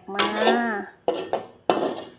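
Metal spatula scraping and knocking against a wok twice while scooping stir-fried food out onto a plate.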